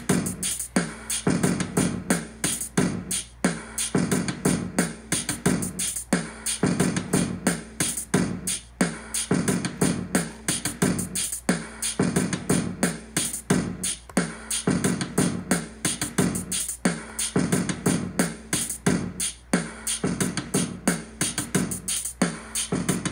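Akai MPC Live playing back a sequenced hip-hop drum beat: a steady repeating pattern of deep kick hits and sharp high drum strokes.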